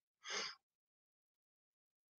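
Near silence with one short breath from the woman at the microphone near the start, lasting about a third of a second.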